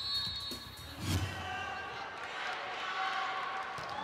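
Indoor volleyball arena between rallies: crowd noise and music over the arena's sound system, with a single low thump about a second in.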